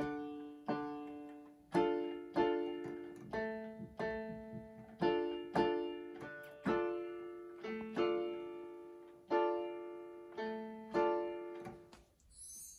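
Electronic keyboard in a piano voice, played slowly as a beginner's chord exercise: low single notes and chords struck one after another at an uneven pace of about two a second, each fading before the next.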